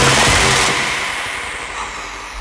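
Electronic dance music thinning out into a fading noise sweep, with thin high tones sliding downward as the sound dies away: a DJ transition effect between drops.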